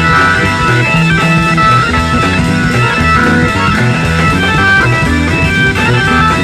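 Instrumental passage of a 1972 German progressive rock (Krautrock) song: the band plays on loudly and steadily, with guitar lines over a bass line that changes note about every half second, and no singing.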